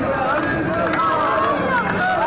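A crowd of young men chanting and shouting together, many voices at once, with some hand clapping.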